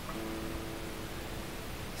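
Acoustic guitar playing a C major chord softly, the notes ringing and fading away over about a second and a half.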